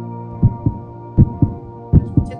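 Background music: sustained soft tones under a low double thump, like a heartbeat, repeating about every three-quarters of a second.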